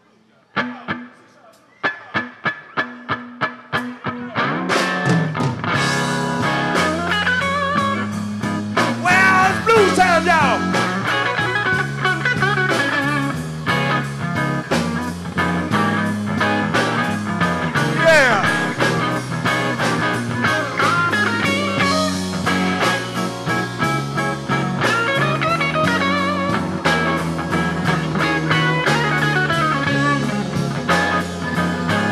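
A live blues band starting a slow blues. A few seconds of sharp, evenly spaced clicks keep time. The full band comes in about five seconds in, with a walking bass line under an electric guitar lead that bends its notes.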